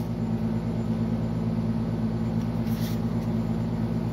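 Steady low mechanical hum made of several held low tones, unchanging; a faint brief rustle about three seconds in.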